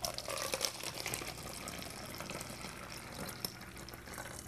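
Liquid tea poured from a ceramic mug through a small plastic funnel into an empty plastic squeeze bottle: a steady trickle as the bottle fills, with a few faint clicks.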